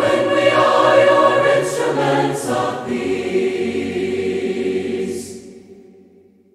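A cappella choir singing a hymn in four-part harmony, closing on a long held final chord that is released about five seconds in and fades out.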